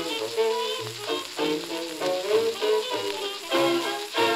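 A 1928 Brunswick 78 rpm shellac record of a hot jazz dance orchestra playing on a turntable, the band's music running under a steady hiss of record surface noise.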